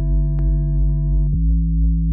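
Electronic dance music breakdown: a sustained deep synth bass chord with no drums, moving to a new chord about two-thirds of the way through, over a few faint ticks.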